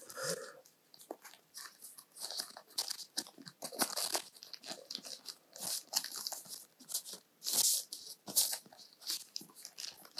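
Thin frosted plastic wrapping crinkling and rustling as it is handled around a clear phone case, in irregular short crackles that come louder now and then.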